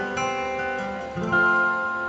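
Live acoustic guitar playing strummed chords that ring out in an instrumental gap of a country ballad, with a new chord struck just after the start and another past the middle.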